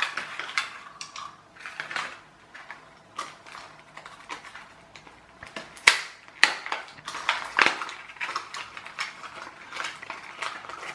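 Rigid plastic blister packaging crackling and clicking as small plastic solar wobbler toys are pulled out and set down on a table: irregular sharp clicks and rustles, with the sharpest snap a little past halfway.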